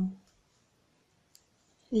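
A single faint click of metal knitting needles knocking together, about a second and a half in, amid near-quiet room tone.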